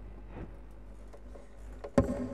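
Faint handling noises as an acoustic guitar is picked up, over a low steady hum. Near the end, one sharp loud hit on the guitar, with its strings ringing on after it.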